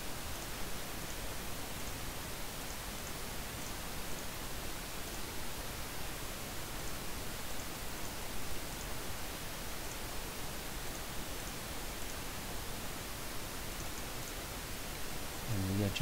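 Steady hiss of microphone and recording noise, with a few faint, short ticks scattered through it.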